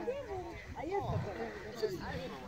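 A camel calling with a wavering groan, mixed with people's chatter close by.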